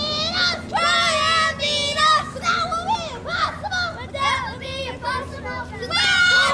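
Young girls' voices shouting and chanting cheers, several high voices overlapping, some calls drawn out in a sing-song way.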